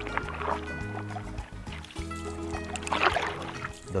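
Background music with sustained tones and a steady bass. Over it, a wooden oar strokes through river water twice, about two and a half seconds apart, each stroke a short splash.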